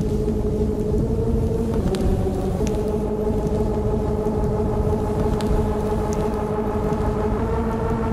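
Techno mix in a breakdown with no kick drum: a dense low rumble under held droning synth tones that step in pitch a few times, with occasional faint high ticks.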